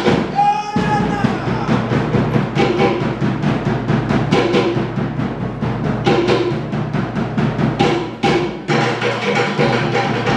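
Tahitian ʻōteʻa drumming: a fast, driving rhythm on wooden toʻere log drums over a deeper drum. It breaks off briefly about eight seconds in and comes back with a loud stroke.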